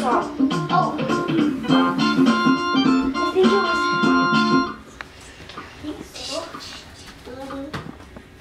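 Electronic toy keyboard playing held organ-like notes, with a child's voice singing or talking over it; the playing stops about five seconds in and it goes much quieter.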